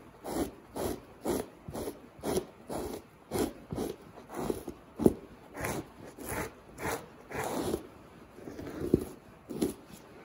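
Fleshing knife scraping down the flesh side of a lynx pelt on a fleshing beam, in repeated short strokes about two a second, pushing off the thin membrane; the hide carries very little fat.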